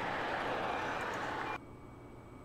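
Steady outdoor work-yard noise with a vehicle engine running, cutting off suddenly about one and a half seconds in.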